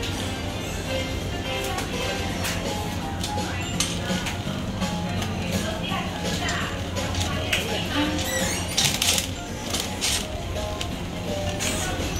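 Store background music playing over a steady murmur of shoppers' voices in a busy shop, with scattered clinks and a short burst of sharp clatter about nine seconds in.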